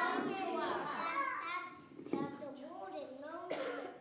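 Children's voices speaking, with a cough about two seconds in.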